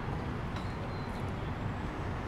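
Steady city traffic noise: an even, low drone of engines and tyres with no single event standing out.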